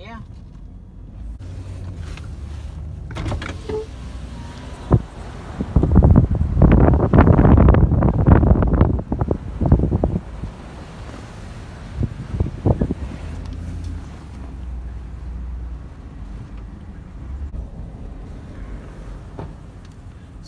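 Low steady rumble inside a GMC vehicle's cabin while it is driven. About six seconds in, a loud rushing noise lasting some four seconds covers it, with a sharp knock just before and a few more knocks shortly after.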